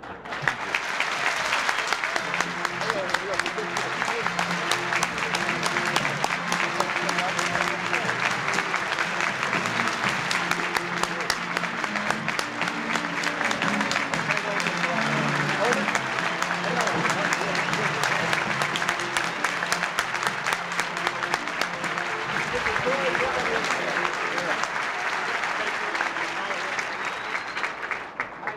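A large audience applauding steadily, with music playing underneath; the clapping dies away near the end.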